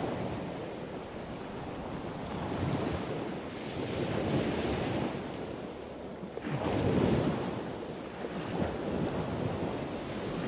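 Surf: waves washing in, a rushing noise that swells and fades every few seconds.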